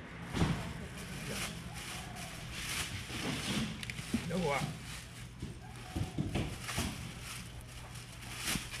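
Busy fish-stall sounds: indistinct voices, plastic bags rustling and a few sharp knocks as fish are handled and bagged, over a steady low hum. A short wavering call rises and falls about four seconds in.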